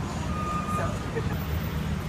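Busy city street ambience: a steady low traffic rumble with fragments of passersby's voices.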